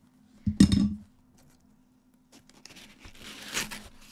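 A loud knock about half a second in. After a short lull comes paper and cardboard rustling and tearing that grows louder toward the end as a cardboard box is opened and packing paper is pulled out.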